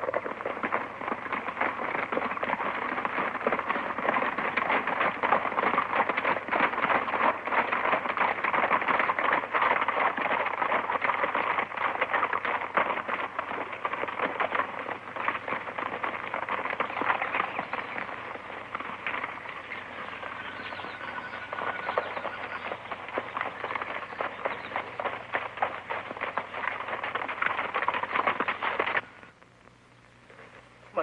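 Hooves of a group of horses clattering along a rocky trail, a dense run of hoofbeats that cuts off suddenly near the end.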